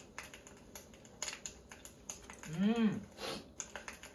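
A man's closed-mouth "mmm" hum while tasting food, once, its pitch rising and then falling, about two and a half seconds in. Faint irregular clicking runs underneath.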